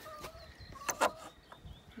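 Hens clucking softly, with two sharp wooden clicks about a second in as the nesting box's back panel is unhooked.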